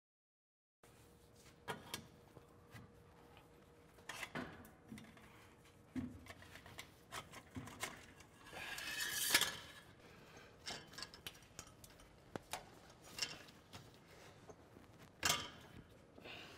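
Faint metal clinks and knocks from stainless steel exhaust tailpipes being handled and worked into their rubber hangers, with a longer scrape about nine seconds in and a sharper knock near the end.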